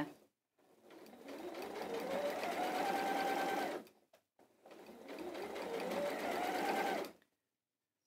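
Domestic sewing machine stitching a seam in two runs: each time the motor speeds up with a rising whine, holds its speed, then stops short, with a brief pause between the runs.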